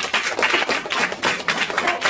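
Rapid, loud hand clapping: many quick, irregular claps in a small room.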